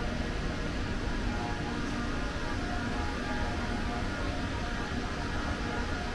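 Steady ambient hum and hiss of an empty underground metro platform, the even drone of the station's air handling with a low rumble beneath.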